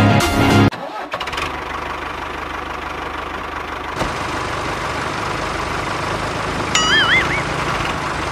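A small engine idling steadily with an even low chug, starting about a second in as the background music cuts off.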